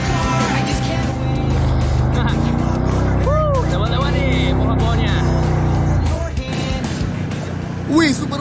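ATV engine running steadily under load as the quad is ridden along a dirt trail, with background music and its beat over it. A rider lets out a short whoop about three seconds in, and the engine sound drops off about six seconds in.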